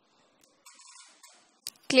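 Near quiet with a faint brief rustle and a click, then a woman's voice calling out a drawn-out word near the end.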